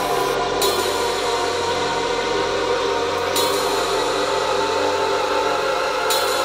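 Beatless breakdown in a drum and bass track: sustained synth chords and hiss with the drums and bass dropped out. A brighter hiss layer steps in about half a second in, and again about three seconds in.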